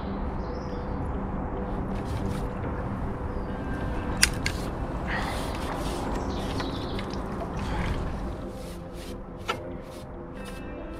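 Water splashing as a hooked fish is drawn into a landing net, over a steady wind rumble and soft background music, with a sharp click about four seconds in and another near the end.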